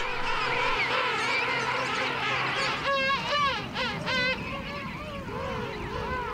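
King penguin colony calling: many overlapping wavering calls, with one louder warbling call from a nearer bird about three to four seconds in.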